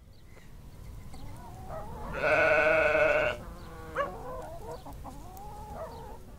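A sheep bleating: one loud, long baa about two seconds in, lasting about a second, among fainter, shorter calls.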